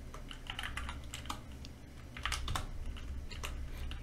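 Typing on a computer keyboard: a run of quick, irregular, fairly faint keystrokes.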